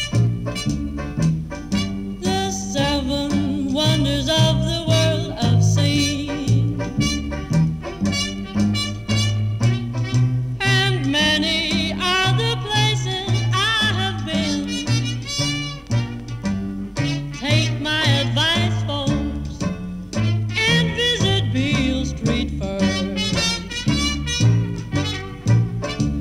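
A 1950s trad jazz band playing a blues at a swing tempo, on an old record: a steady beat in the low end under a melody line with wide vibrato.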